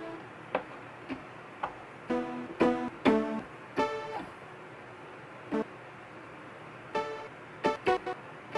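Short, sparse pitched notes and small clusters of notes from a software instrument played on a MIDI keyboard controller. They come unevenly, with pauses of about a second between them, and have a plucked, keyboard-like attack.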